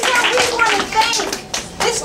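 A small audience clapping, with voices talking and calling out over the claps; the clapping thins out briefly near the end.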